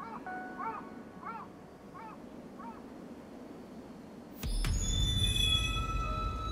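Film soundtrack: a bird calls a series of short chirps, rising then falling, over faint outdoor ambience. About four and a half seconds in, a sudden hit opens into a loud, deep, low drone with high ringing tones, the music of a tense opening.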